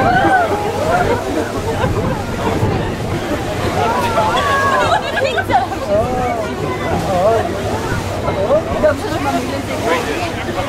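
Indistinct chatter of several passengers talking at once, over a steady low hum and the wash of sea water against the hull.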